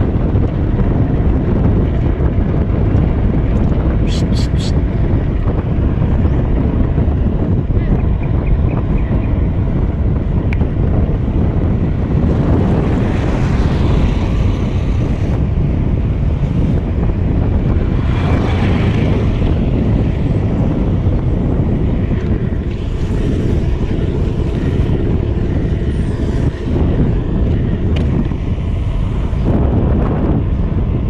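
Heavy wind buffeting the microphone of an action camera carried on a moving BMX bike, a steady loud rumble. A brief cluster of sharp high ticks comes about four seconds in.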